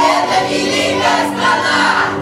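A group of children singing together over a musical backing track.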